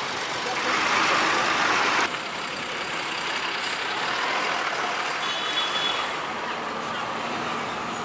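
Street traffic around a heavy truck passing close by, with a loud hiss that cuts off suddenly about two seconds in. A short high-pitched beep sounds about five seconds in.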